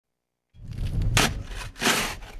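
A metal snow shovel scraping and digging into packed snow, starting about half a second in, with two louder scrapes about a second in and near the end.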